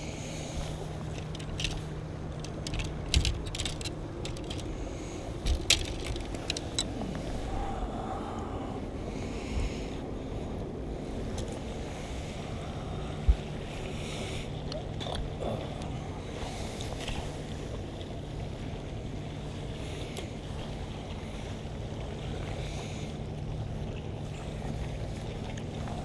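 Steady low hum on a bass fishing boat, with scattered clicks and knocks of rod and reel handling on the deck while a spinning rod is cast and reeled.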